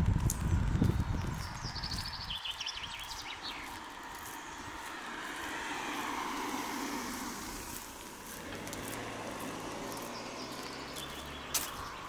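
Outdoor village street ambience picked up by a camera's built-in microphone. A low rumble fills the first two seconds, then a bird gives a few short chirps. A vehicle passes, swelling and fading, followed by a low steady hum.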